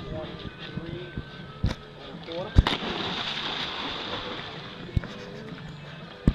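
A Staffordshire bull terrier jumping into a swimming pool: a sharp splash about two and a half seconds in, followed by a couple of seconds of spattering, churning water.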